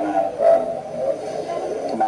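A Buddhist monk's voice preaching into a handheld microphone, heard thin and narrow as if through a loudspeaker.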